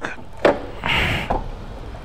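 A click, a short scraping rasp and a second click from the Zontes 350E scooter's parking brake lever being set, with the engine switched off.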